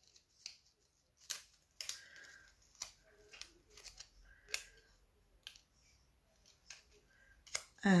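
Small, scattered crinkles and clicks of a nail sculpting form being rolled and pressed around a fingertip, about a dozen short sharp crackles at uneven intervals with faint rustling between.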